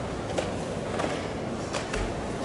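Steady hum and murmur of a large sports hall, with a few faint short snaps from a karate competitor's kata movements, about three across two seconds.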